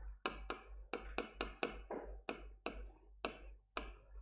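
Marker pen writing on a board: a quick run of short tapping and scratching strokes, about four a second.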